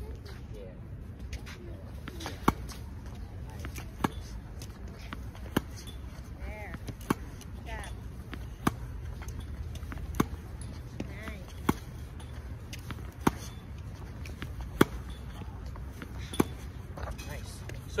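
Tennis balls struck by a racket in a fed hitting drill: a sharp, crisp hit about every one and a half seconds, ten in all.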